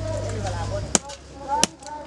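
Large knife chopping dried wild boar meat on a wooden block: two sharp strikes, one about a second in and one shortly before the end.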